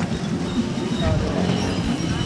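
Busy street ambience: steady traffic noise with faint background voices.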